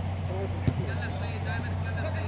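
Players' distant shouts and calls over a steady low hum, with one sharp knock about two-thirds of a second in.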